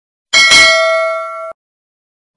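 Notification-bell sound effect: a bright bell struck twice in quick succession, ringing and fading for about a second before cutting off suddenly.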